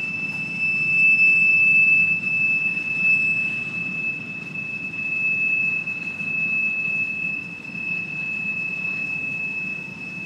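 Freight train's covered hopper cars rolling past with a low rumble of wheels on rail, over a steady high-pitched wheel squeal that holds one pitch throughout.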